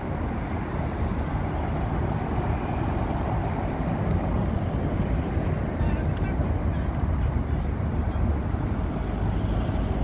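Road traffic at a junction: car, van and bus engines running, with a steady low rumble.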